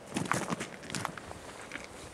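Footsteps on a gravel path, several quick steps in the first second, then fainter ones.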